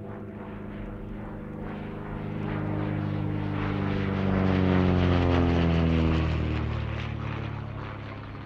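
Engine-like drone in an electronic track, like an aircraft passing: a stack of low humming tones swells to its loudest about five seconds in, slides down in pitch as it passes, then fades.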